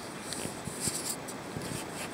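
Faint rustling and scraping, with a few soft clicks, from a handheld camera being moved about and handled.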